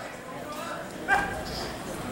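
Boxing-arena crowd noise, with a short, sharp yell from a ringside spectator about a second in.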